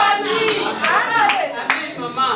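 Hand clapping, sharp claps roughly every half second, over a person's speaking voice.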